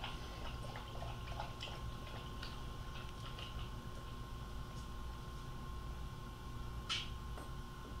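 Quiet room tone: a steady low hum with a thin steady high tone, a few faint small clicks of handling, and a brief hiss about seven seconds in.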